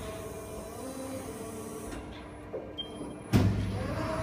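Vertical plastic injection molding machine running with a steady hum, then a sharp clunk a little over three seconds in, after which the low hum is louder.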